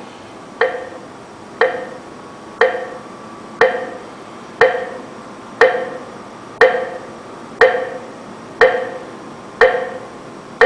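Clock ticking steadily once a second, ten sharp ticks, each with a brief ringing tail.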